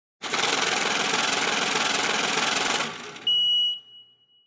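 Logo intro sound effect: a dense, even noise for about two and a half seconds that fades out, then a single high, steady beep-like tone that comes in sharply and drops back to a fainter ring.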